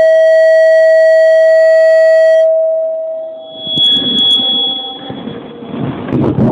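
Electronic tones from an intro jingle: one loud, steady held note that fades out about three and a half seconds in, followed by a higher, thinner steady tone lasting about two seconds.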